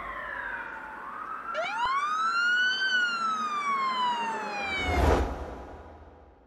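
Siren-like sound effect at the end of a drill instrumental. One tone slides down, then another sweeps up and glides slowly back down. About five seconds in, a noise hit with deep bass sounds, and everything fades out.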